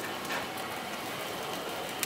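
Steady sizzling and crackling from a barbecue grill cooking a rotisserie turkey.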